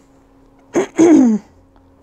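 A woman clearing her throat with a cough: two quick bursts about three-quarters of a second in, the second longer and falling in pitch.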